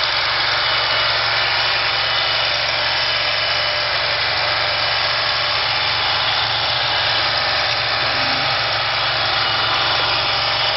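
The 18-horsepower gasoline engine of a FINN T-30 hydroseeder running steadily at a constant speed.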